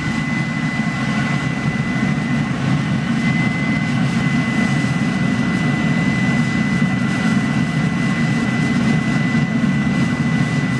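Waste-oil burner firing into a bucket foundry: a steady low roar of flame and forced air, with a thin steady whine above it.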